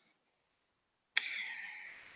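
Near silence, then a sudden click about a second in, followed by a fading rustle of a cloth garment being picked up and handled.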